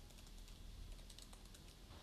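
Faint keystrokes on a computer keyboard, a quick irregular run of light clicks as code is typed.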